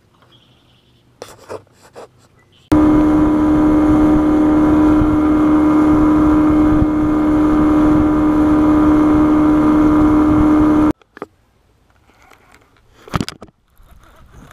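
A boat's outboard motor running steadily with the boat under way, a loud even engine note that starts abruptly about three seconds in and cuts off suddenly about eleven seconds in. Before and after it there are only a few faint clicks.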